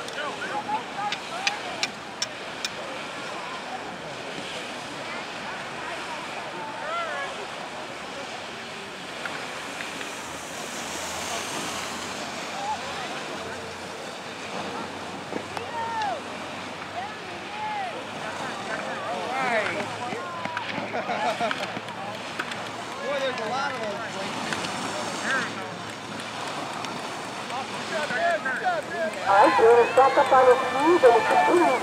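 Steady wind noise on the microphone with outdoor hiss, and faint distant voices talking and calling out now and then, more often in the second half.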